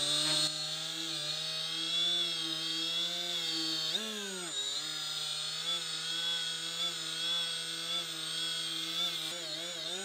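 Milwaukee M12 cordless quarter-inch die grinder whining at about 10,000 rpm as a cloth polishing ring loaded with green compound buffs steel. Its pitch sags briefly about four seconds in and comes back.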